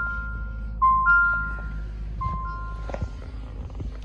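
Jeep Compass dashboard warning chime: a rising two-note ding-dong repeating about every second and a half, stopping after about three seconds, over a low steady hum as the ignition is switched on.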